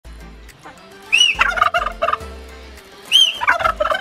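A domestic tom turkey gobbling twice, about two seconds apart. Each gobble opens with a short arching note and breaks into a rapid rattling run of notes.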